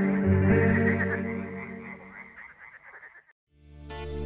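The final chord of a twelve-string acoustic guitar dies away with frog croaking over it. After a moment of silence, new guitar music starts near the end.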